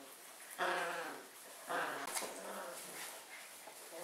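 Bearded collie puppies vocalizing while playing over a toy: two short pitched calls, about half a second and nearly two seconds in, the first the loudest.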